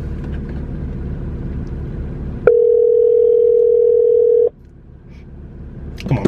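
Telephone ringback tone heard through a phone's speaker: one steady two-second ring about two and a half seconds in, part of a repeating ring-and-pause cycle. It is the sign that the called phone is ringing and the call has not been answered.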